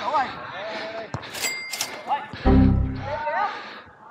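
Footballers' voices calling across a small-sided match, with a sharp ball strike about a second in. A short ringing sound effect follows, then a loud, low, steady buzzing effect of about half a second just past halfway, added in the edit.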